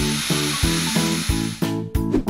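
Cordless drill running as it drives into a wooden board, stopping about one and a half seconds in, over children's background music with a steady quick beat.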